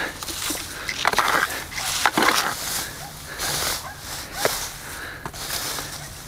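A rake scraping and dragging through dry grass, dead leaves and brush in several irregular strokes.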